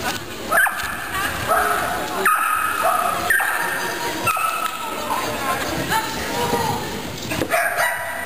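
Polish hound barking again and again, about eight short barks spaced a second or so apart, while running an agility jumping course.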